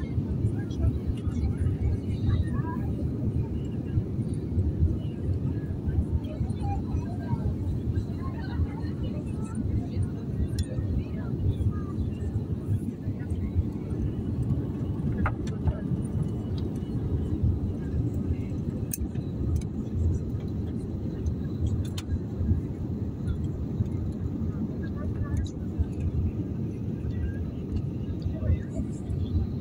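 Airliner cabin noise on descent with the flaps extended: a steady low rumble of engines and airflow, with a few faint clicks.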